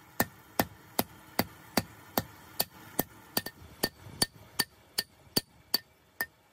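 Hand hammer forging a red-hot steel blade on an improvised steel-block anvil: steady blows about two and a half a second, each with a short metallic ring.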